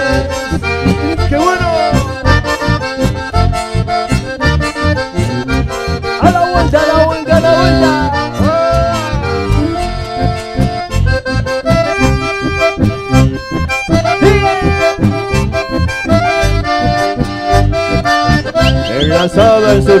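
A live chamamé band plays an instrumental passage. A bandoneón and a red button accordion carry the melody over bass guitar and acoustic guitar, with an even, steady beat.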